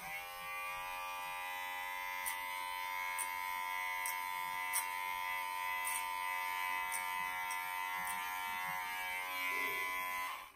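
Electric hair clippers switched on and buzzing steadily as they cut hair at the side of the head.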